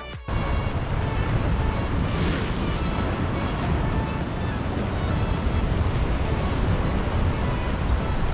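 Loud, steady rumble of wind on the microphone mixed with sea surf washing over the rocks, cutting in abruptly just after the start. Background music continues faintly underneath.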